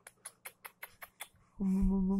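A quick run of lip-smacking kisses, about six a second, pressed on a baby's cheek, followed about a second and a half in by a steady hummed 'mmm' from a woman's voice, louder than the kisses.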